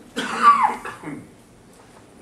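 A person coughing once, a loud hoarse burst about a second long whose voiced tail falls in pitch.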